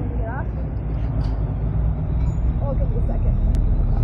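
Motorcycle engine idling, low and steady, with a few faint voices in the background.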